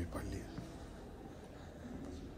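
Soft, whispery speech trailing off near the start, then faint room tone.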